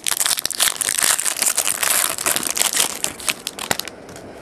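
Foil wrapper of a pack of trading cards crinkling and crackling as it is torn open and handled, in a dense run of quick crackles.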